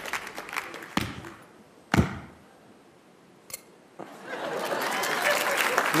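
Two sharp knocks a second apart, coins clinking as they land on the coins already swallowed in the performer's stomach. Audience applause fades at the start and builds again over the last two seconds.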